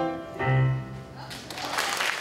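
A piano-accompanied song ends on a final chord about half a second in, which rings and fades; about a second later applause breaks out and grows.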